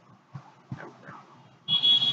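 A short, loud, high-pitched steady beep, lasting about half a second, that starts near the end.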